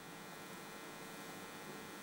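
Faint steady hum with a low hiss.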